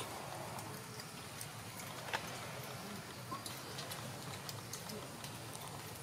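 Steady outdoor background hiss with a few faint sharp clicks, the clearest about two seconds in.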